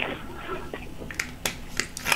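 A man taking a sip from a small glass bottle close to the microphone: a sharp click as the drink starts, faint swallowing and handling sounds, then a few light clicks in the second half as the bottle comes down.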